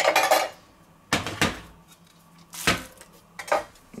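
Metal food cans set down on a stainless-steel sink drainer: four separate clanks a second or so apart.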